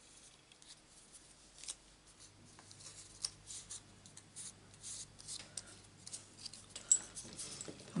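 Faint, scattered light ticks and rustles of paper being handled on a desk, with a low steady hum starting about two seconds in.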